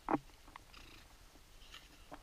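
A short mouth sound just after the start, then faint, scattered crackling of snow and gloves handled at the mouth.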